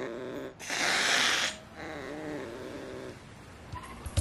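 Angry cat growling with a wavering pitch, then a loud hiss lasting about a second, then growling again.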